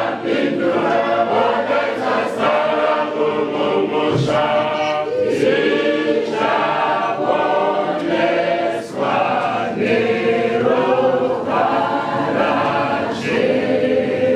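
A congregation singing a hymn together as a choir.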